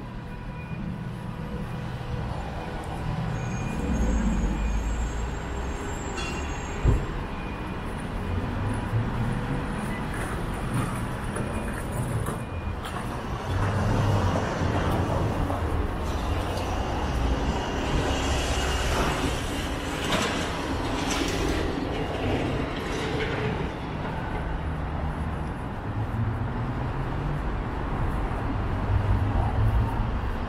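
City street traffic: a steady rumble and hum of vehicles running along the street, with a single sharp knock about seven seconds in.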